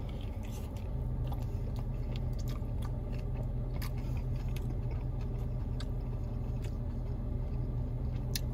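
Close-up biting and chewing of a folded Papadia pizza-dough sandwich: a bite at the start, then wet chewing with many small clicks. A steady low hum runs underneath and grows a little louder about a second in.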